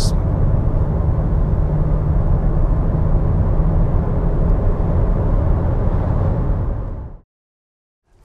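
Steady road and engine noise heard inside the cabin of a moving VW T-Roc at cruising speed, a low hum with tyre rumble. It fades out about seven seconds in, leaving silence.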